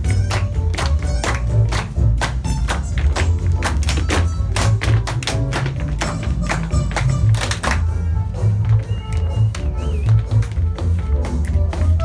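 Upbeat swing music with a steady bass beat, overlaid by many sharp taps of dancers' shoes striking the wooden floor; the taps are thickest over the first eight seconds and thin out after.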